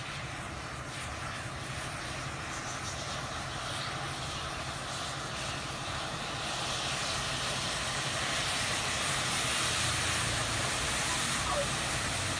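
Burning matchsticks hissing as the fire spreads through a matchstick model, the hiss growing louder about halfway through as the flames engulf it.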